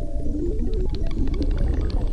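Live band playing an instrumental passage: stepping, gliding synthesizer lines over a deep bass, with short high percussion ticks coming in just under a second in.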